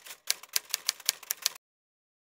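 Typewriter key strikes as a sound effect for typed-on text: a quick, even run of clicks, roughly eight a second, that stops abruptly about a second and a half in.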